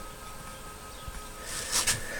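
Quiet room tone with a faint steady hum, and a brief soft hiss about one and a half seconds in.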